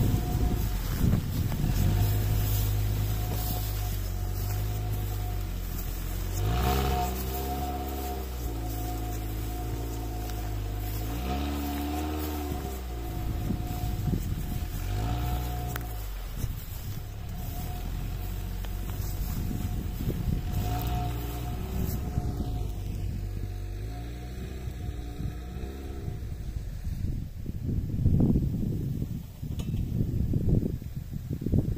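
Quad bike (ATV) engine running in low gear through tall grass, its revs rising and falling several times, and briefly climbing at about 7, 11 and 15 seconds in. Near the end the engine fades under rustling and wind noise.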